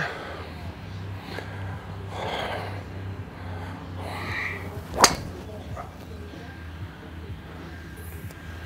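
Golf driver striking a teed ball: one sharp, loud crack about five seconds in, over a steady low background hum.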